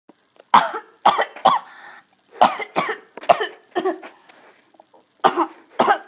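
A person coughing in short fits: a few sharp coughs, a pause, several more, then another pair near the end.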